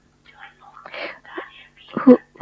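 Only speech: a voice speaking softly and faintly, with no words the recogniser could make out.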